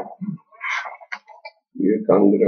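Speech: a man talking in short bursts, with a louder stretch of voice near the end.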